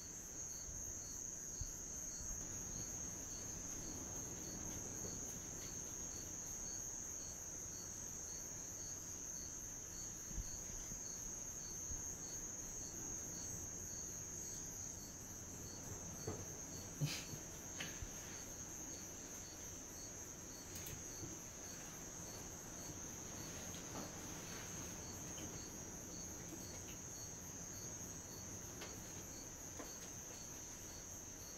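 Crickets: a steady high trill with a second cricket's regular, evenly spaced chirps over it, and a few faint clicks in the middle.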